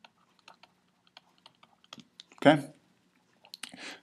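Faint, irregular light clicks and taps of a stylus on a pen tablet while a word is handwritten, with a short spoken "okay" about two and a half seconds in.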